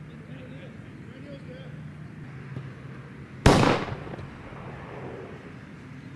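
A single loud, sharp bang about three and a half seconds in, with a short ringing tail: the start signal of a timed sprint.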